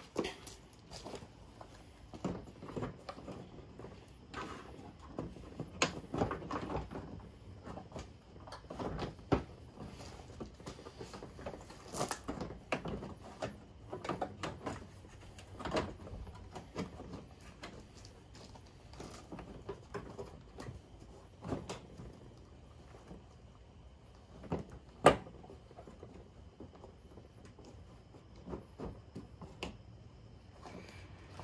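Plastic headlight assembly being handled and slid into place in a car's front end: irregular knocks, clicks and scraping of plastic on plastic, with one sharp, louder click near the end.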